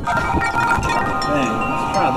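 Wind chimes ringing in the wind: several held, overlapping metallic tones, with fresh ones struck every so often.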